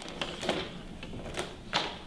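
A few sharp light clicks and taps, about four, spaced unevenly over a faint room background.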